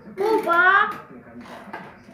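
An excited vocal cry with gliding pitch, about a second long near the start, followed by a few short faint clicks.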